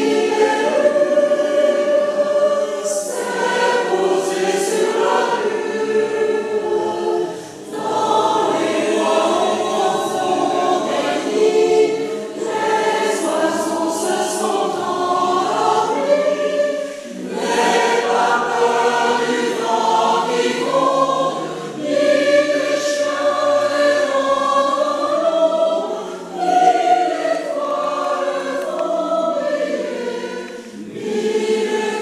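Amateur choir singing a Russian lullaby in several voice parts, in phrases with short pauses between them, in a reverberant church.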